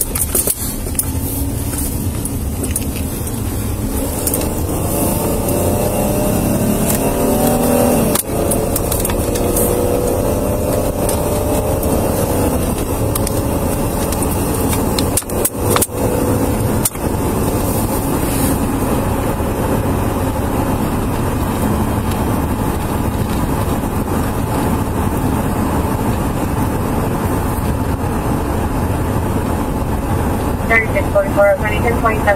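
Ford patrol vehicle's engine and road noise heard inside the cabin as it pulls away and accelerates, the engine pitch rising over the first several seconds before settling into a steady cruise. A few brief clicks come about midway.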